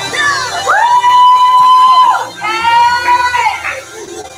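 Recorded worship song playing, a voice holding two long high notes, each swooping up at its start and falling away at its end.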